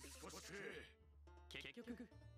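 Faint anime episode audio: a high-pitched girl's voice speaks briefly in Japanese, then soft background music with steady notes.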